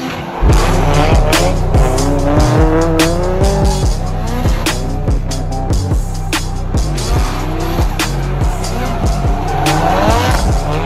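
Drift cars sliding in tandem: engines revving in rising sweeps and tyres squealing on the tarmac, starting loudly about half a second in. Music with a heavy, steady beat runs underneath.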